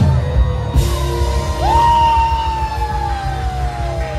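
Live band music: a saxophone lead over bass and drums, holding one long note that scoops up about a second and a half in and then slowly slides downward.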